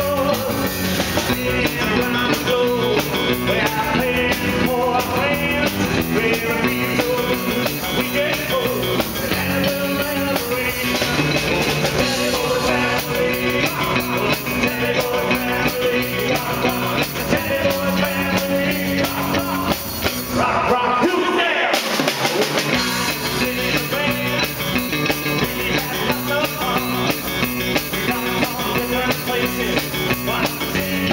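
A live rock and roll band playing loud through a PA: electric guitar, drum kit and a man singing. The bass and top drop out briefly about two-thirds of the way through, then the band comes back in.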